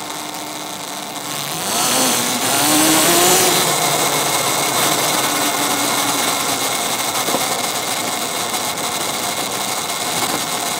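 A 72-volt electric quad's motor whining, rising in pitch as it speeds up about two seconds in, then holding steadier and easing off, over constant tyre and road noise, picked up by a mic on the quad.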